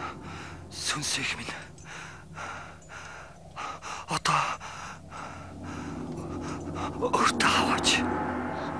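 A man gasping for breath in pain: a few sharp, laboured breaths with brief strained vocal sounds, the loudest near the end.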